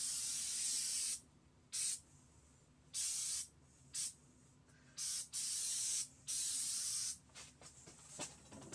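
Aerosol can of black spray paint hissing in about seven separate bursts, the longer ones close to a second, the shorter ones brief puffs.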